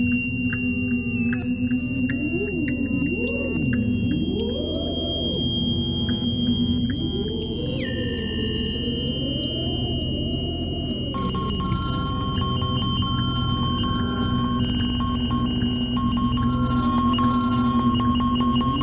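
Electronic music built from acoustic feedback (Larsen effect) tones and their modulations. A steady low drone carries high whistling tones. In the first half, wavering tones slide up and down. A high tone drops in pitch about eight seconds in, and a new steady tone enters about eleven seconds in.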